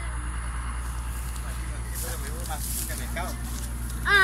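Muddy floodwater rushing steadily through a freshly dug earth drainage channel.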